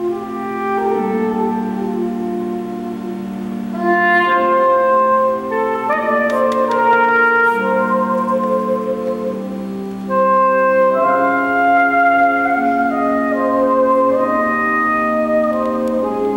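Soprano saxophone playing a slow melody of long held notes over sustained pipe organ chords. The melody comes in stronger about four and ten seconds in.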